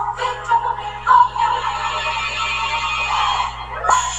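Electronic background music with a steady, continuous mix.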